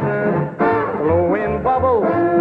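Swing big-band music playing loud and steady, with pitched lines over an evenly paced bass, in a short gap between a male pop singer's sung lines.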